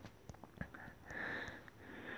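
A faint breath or sniff through the nose close to the microphone, a soft hiss about a second in, with a few faint short clicks.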